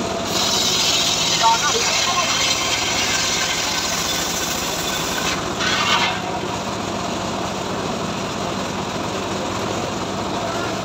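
Homemade engine-driven circular sawmill ripping a mahogany log, the blade cutting through the wood over the steady running of its engine. The cutting is loudest for the first half, surges briefly about six seconds in, then eases while the engine and blade run on.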